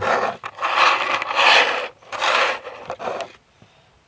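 Hands sliding and arranging small RC parts across a tabletop: four rough, noisy strokes of up to about a second and a half each, stopping about three and a half seconds in.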